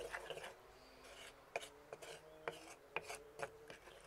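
Wooden spoon stirring a thick arugula and mustard sauce in a stone mortar: a few faint, irregular scrapes and taps of the spoon against the stone.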